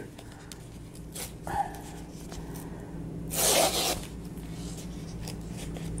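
Paper envelope flap being torn open by hand: a few soft paper rustles, then one loud tear lasting under a second about halfway through.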